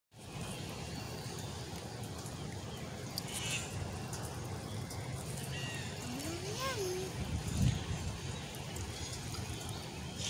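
Steady low outdoor rumble, with a person's short drawn-out vocal sound that rises and then falls in pitch about six seconds in, and a soft thump just after it.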